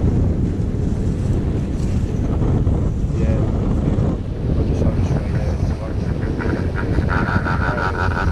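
Wind buffeting the microphone as a chairlift chair rides up the cable, a steady low rumble. Near the end a humming, fast clatter joins in as the chair nears the lift tower and runs over its sheave wheels.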